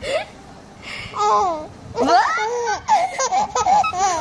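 A baby laughing in short bursts: a brief laugh at the start, another a little after a second in, then a longer run of repeated laughs from about two seconds in.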